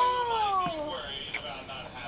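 A cat meowing: one long call that falls steadily in pitch, lasting under a second.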